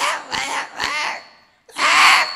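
A man's voice making short breathy, gasping throat sounds, three in quick succession and a louder one near the end, mimicking a chicken choking as its throat is cut.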